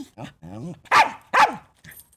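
A small dog yapping: a few short, wavering yips, then two loud sharp barks in quick succession about a second in, and a faint last yip near the end.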